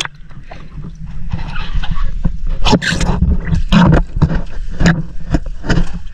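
Water splashing and sloshing around the camera as it is dipped into the sea, then several sharp knocks and splashes from fish being handled in water in the bottom of the boat, over a steady low rumble.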